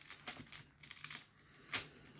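Faint small clicks and rustling from rune stones shifting in a velvet pouch as it is handled, with one sharper click near the end.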